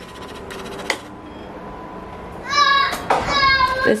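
A young child's voice, very high-pitched, calling out in a few short squealing phrases starting about two and a half seconds in, after a quieter stretch with a single click about a second in.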